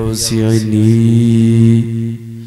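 A man's voice chanting one long, steady held note into a microphone, intoning a dua (Islamic supplication) in the melodic style of a waz preacher.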